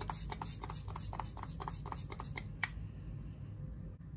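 A pump mist spray (MAC Fix+) spritzed onto the face in a quick run of short sprays, about six a second, stopping about two and a half seconds in.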